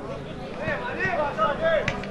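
Voices shouting at a football match as play builds toward the goal, growing louder through the second half, with one sharp knock just before the end.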